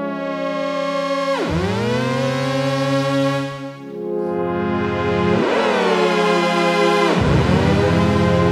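Waldorf Blofeld synthesizer pad chord held on the sustain pedal, swooping sharply down in pitch and gliding back three times, about 1.5, 5.5 and 7 seconds in. The swoops come from the mod wheel run through a lag processor that smooths its movements. The chord changes about 4 seconds in.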